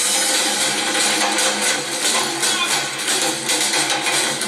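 A percussion ensemble playing a steady driving rhythm by hand on congas and djembes, with a jingling tambourine-like shaker over the drums.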